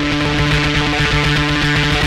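Electric bass played through a fuzz pedal, one heavily distorted note held steadily, with a rough fluttering rumble in its low end.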